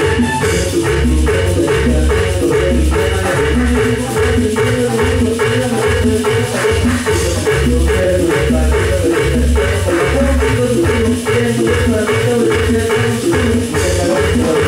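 Live band playing loud Latin dance music with a steady, even beat and heavy bass.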